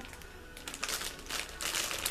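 Clear polypropylene bag of wax melts crinkling in irregular bursts as it is handled, starting about half a second in, over faint background music.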